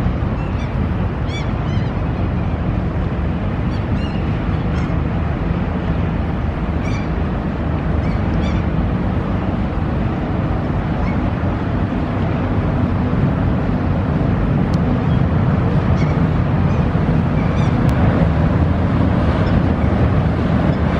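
Low, steady engine rumble of a general cargo ship moving slowly through a lock close by, growing slightly louder in the second half. Small birds chirp now and then over it.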